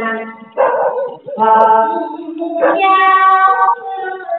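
Singing: a voice holding long, steady notes that step from pitch to pitch.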